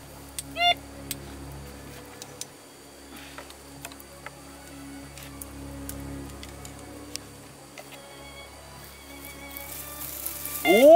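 Metal detector swept over a dug hole, giving one short, loud pitched beep about half a second in that signals metal under the coil, and faint steady tones near the end, over a low steady hum.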